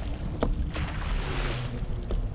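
Wind buffeting the microphone of a camera on a towed parasail: a steady low rumble, with the hiss of sea spray fading away and a few faint ticks.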